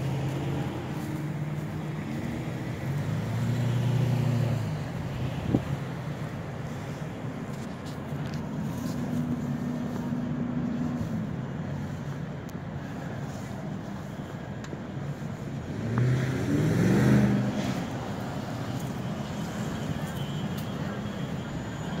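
Road traffic: motor vehicle engines running and passing, with a steady low hum and one engine rising in pitch about sixteen seconds in.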